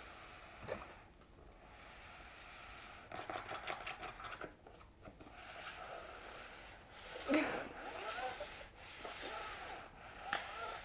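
Rubbing and scratching in a small box as a cat plays in it with a person's hand, with a quick run of scratches about three seconds in. A short vocal sound that rises and falls in pitch, the loudest thing, comes about seven seconds in.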